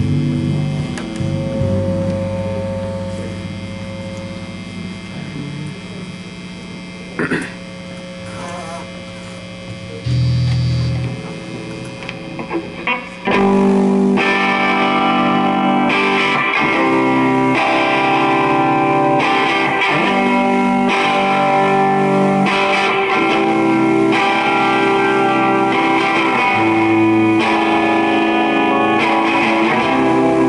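Live rock band with distorted electric guitars: held guitar notes ring out at first, with a low bass note about ten seconds in. About thirteen seconds in the full band comes in loud, with drums and distorted guitars, and plays on steadily.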